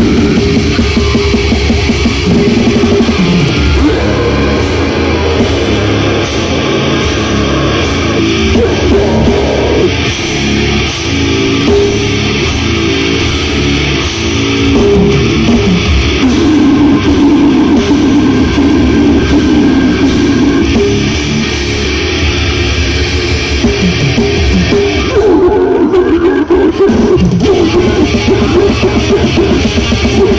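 Live death metal band playing loud: heavily distorted electric guitars and a pounding drum kit, with the singer's vocals into the microphone, heard from inside the crowd.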